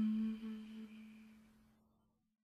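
The last held note of a sung mantra, one steady low pitch fading out over about two seconds into silence.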